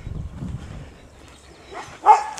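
German Shepherd-type dog panting, with a few low thumps in the first half second.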